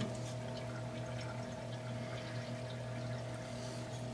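Cooling water trickling out of a glass CO2 laser tube through its hose, draining back into the water cooler, over a steady low hum.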